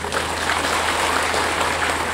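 Audience applauding in a large hall; the clapping starts suddenly and holds steady.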